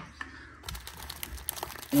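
Crinkling plastic wrapping of vacuum-sealed bandage packs being handled and pulled from the kit's elastic straps, starting about half a second in, with small clicks.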